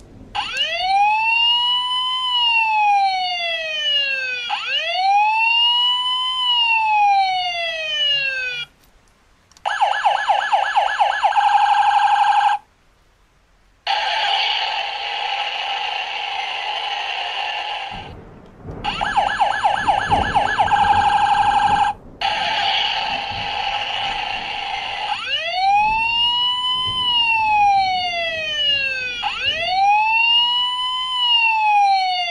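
Tonka toy police truck's electronic siren playing through its small speaker, set off from the roof lightbar buttons. A slow rising-and-falling wail runs for about nine seconds. After a short break it switches to a fast warble, and it goes on changing between siren patterns with brief gaps, the slow wail coming back near the end.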